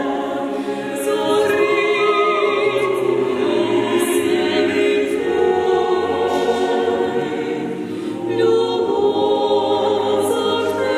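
Mixed-voice choir singing a cappella, holding long sustained chords, with sung 's' consonants showing through now and then.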